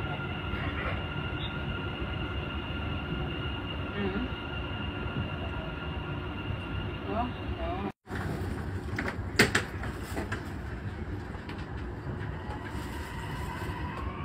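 Dubai Metro train heard from inside the carriage: a steady rumble under a steady high whine. The whine fades a little past the middle, the sound cuts out briefly, and a few sharp clicks follow over the rumble.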